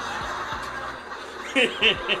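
A man chuckling. The laugh comes in two short loud bursts near the end.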